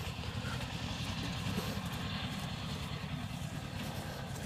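Hands brushing and scraping through loose, dry soil, faint scratching over a steady low rumble.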